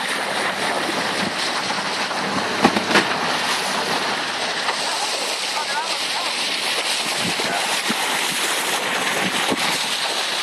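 Steady rush of water along a sailing yacht's hull and bow wave as it moves through the sea, with two brief louder sounds about three seconds in.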